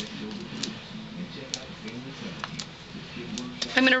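Faint scattered ticks of foam adhesive dots being peeled from their backing sheet and pressed onto the back of a small cardstock panel.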